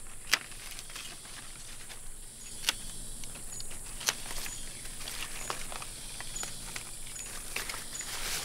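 Hand pruning shears snipping plant stems: a few sharp snips, the loudest about a third of a second in and others near 2.7 and 4 seconds, with fainter clicks between. Under it, a steady high-pitched hum of rainforest insects.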